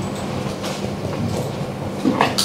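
Steady low hum of meeting-room background noise, with a few faint rustles and small clicks.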